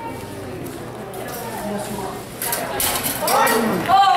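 Steel rapiers clashing in a fencing exchange: a quick run of sharp clicks and clatter beginning a little past halfway. A loud yell that rises steeply in pitch follows near the end and is the loudest sound.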